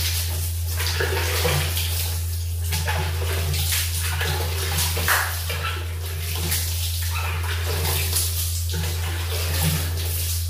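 Water running and splashing in a small tiled bathroom as a person washes their body and face, with irregular splashes over a steady low hum.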